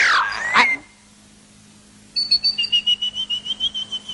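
Cartoon sound effects: a whistle-like tone gliding down in pitch in the first second, then a short pause, then a rapid high-pitched pulsing trill of about ten pulses a second from about two seconds in.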